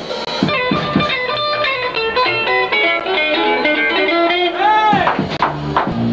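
Live rock band playing loudly: an electric guitar plays a fast run of single notes over drums, with one note bent up and back down near the end.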